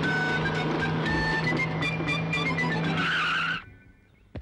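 A car's engine and tyres on the move, mixed with film background music. There is a screech near the end, and the whole sound cuts off abruptly about three and a half seconds in.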